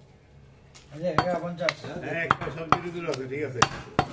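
A cleaver chopping goat meat on a wooden log chopping block: several sharp chops, the first about a second in. A voice talks in the background.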